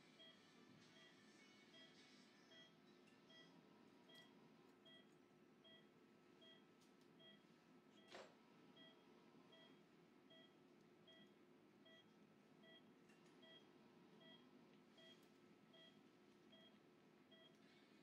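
Faint, evenly spaced beeping of an anaesthesia patient monitor, about two short beeps a second, the pulse tone that tracks the anaesthetised dog's heartbeat. A single sharp click about eight seconds in.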